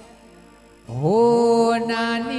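A male voice singing an aalap, the drawn-out devotional vocal line. After a soft fading tail it enters about a second in, slides up and holds one long steady note.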